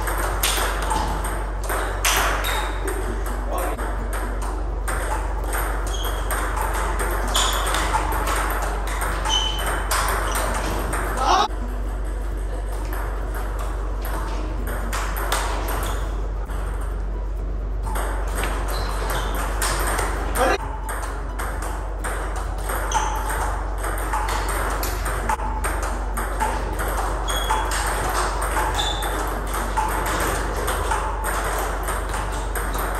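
Table tennis balls clicking off the bats and bouncing on the tables in quick, continuous rallies, with hits from more than one table at once. Two louder knocks come about a third and two-thirds of the way through.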